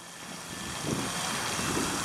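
Wind buffeting the camera's microphone, a rough low rumble that builds about half a second in and then holds.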